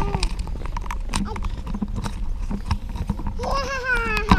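Baby stroller wheels rattling over a brick-paved path, with a dense run of quick uneven knocks and clatters. Near the end a toddler sings out a drawn-out "a-a-a".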